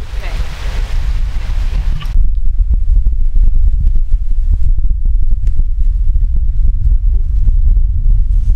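Wind buffeting the microphone: a loud, uneven low rumble with crackles. A higher hiss over the first two seconds stops abruptly about two seconds in.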